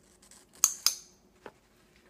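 Hand-held scissor-type grooming trimmer at a dog's paw, snapping shut twice in quick succession with two sharp snips about a quarter second apart, then a faint click about a second later.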